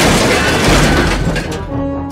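Crash sound effect: a loud smash that dies away over about a second and a half.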